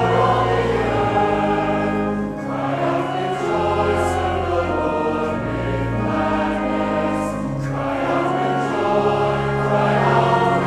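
A large mixed choir singing with instrumental accompaniment, moving through long held chords over sustained low notes.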